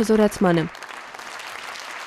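Large audience applauding, a steady clapping from many hands. A man's voice is heard over it for the first moment.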